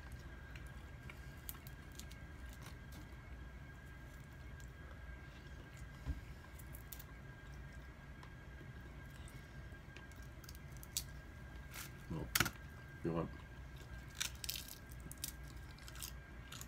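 Quiet eating sounds: a person chewing and tearing pieces of rotisserie chicken apart by hand, with small wet crackles and clicks of skin and bone, a few sharper ones near the end. A faint steady hum and thin high whine sit underneath.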